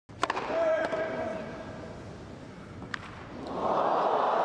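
Tennis ball struck hard by a racket on a serve, with a short grunt just after the hit, then a second ball strike about three seconds in. Crowd noise swells near the end.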